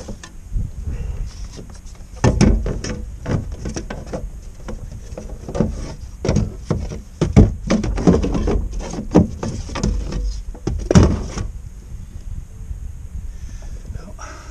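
Irregular knocks, bumps and clatters of gear being handled against a fishing kayak, starting about two seconds in and stopping shortly before the end, with the sharpest knocks near the middle and a little over eleven seconds in.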